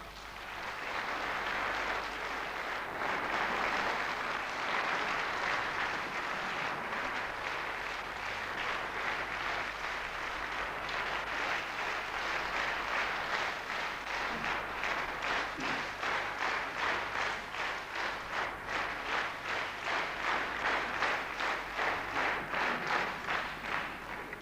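Concert-hall audience applauding: a dense wash of clapping that, from about ten seconds in, falls into unison as a steady rhythmic beat of about two to three claps a second.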